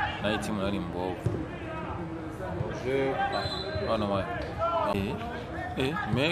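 Men's voices talking and calling out across the pitch, with a few dull thuds of a football being kicked.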